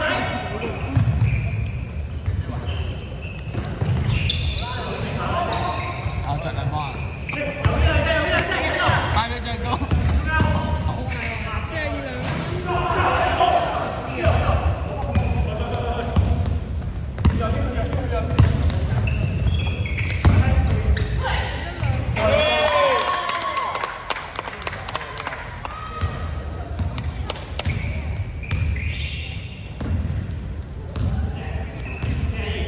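Basketballs bouncing on an indoor court floor as players dribble during a game, echoing in a large sports hall, with players' voices calling out over it.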